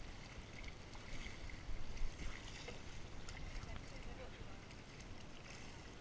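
Water lapping and splashing around a floating plastic pontoon, with faint voices in the background.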